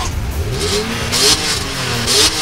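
BMW M3 E46's 3.2-litre naturally aspirated inline-six (S54) revved at standstill in quick blips through the exhaust, the pitch rising and falling with each rev. Its sound is tinny and gurgling.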